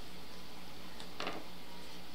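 Quiet room tone: a low steady hum, with a faint click about a second in and a soft brief rustle just after.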